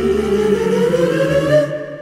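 A cappella choir: a bass soloist holds out "Mister" on a sung note that slides upward over sustained chords from the other voices. It thins out and fades near the end.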